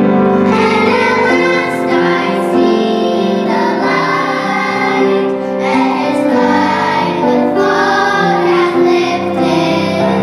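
A group of young girls singing a pop song together, with no break.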